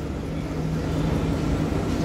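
Cairo Metro Line 1 train pulling into the station, a steady low hum that grows slightly louder as it approaches.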